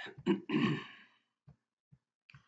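A man clearing his throat: a rasp followed by two short pushes within the first second, then two faint soft knocks.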